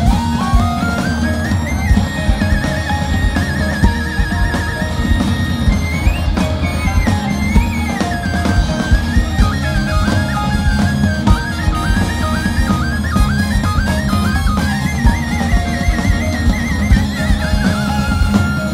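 Live jazz-rock band playing an instrumental passage: a drum kit and bass groove under electric guitar, with a trumpet in the ensemble. A lead melody line runs over the top, with trills around four seconds in and again near the end.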